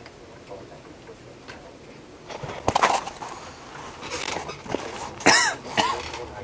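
A person coughing in a small room: a burst of coughing about two and a half seconds in, and two sharper coughs near the end, the first of these the loudest.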